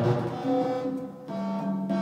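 Buchla 100 modular synthesizer playing a self-running patch: a sequence of electronic notes at changing pitches. A new note starts suddenly about half a second in and another just past a second, each fading away.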